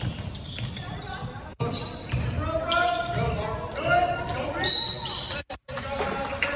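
A basketball bouncing on a hardwood gym floor as it is dribbled, with voices calling out on and around the court.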